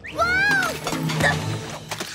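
A young cartoon pony's high-pitched cry of "Whoa!" as she loses her balance, followed by a jumble of clattering over background music.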